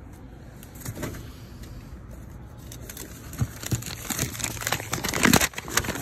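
Papers and a large mailing envelope being handled and rummaged through: irregular rustling and crinkling that starts faint, turns busier about three seconds in, and is loudest about five seconds in.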